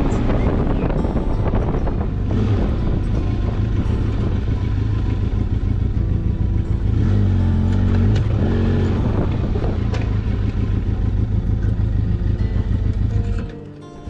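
Motorcycle engine running while riding, with steady engine and road noise; it drops away sharply near the end as the bike stops.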